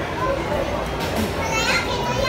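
Children's voices and chatter over the steady background din of a busy indoor play area, with one child's high-pitched voice about one and a half seconds in.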